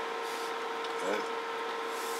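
A steady mid-pitched electronic hum over faint hiss, from the radio test bench.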